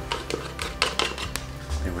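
Plastic mixing bowl knocking and tapping on a granite countertop as bread dough is turned out onto the floured surface: a handful of short sharp knocks over the first second and a half.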